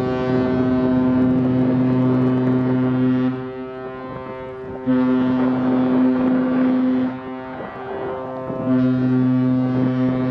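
A large cargo ship's horn sounding three deep blasts: a long one of about three seconds, a shorter one after a pause of about a second and a half, and a third starting near the end.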